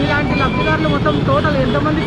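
Quieter background voices over a steady low outdoor rumble of street noise, between loud bursts of close speech.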